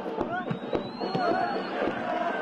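Footballers shouting and calling to each other on the pitch, amid frequent sharp, irregular knocks. A thin high tone rises slightly and holds for about a second in the middle.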